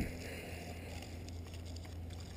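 Spinning reel being cranked as a small bream is reeled in: a faint whir for about the first second, over a steady low hum.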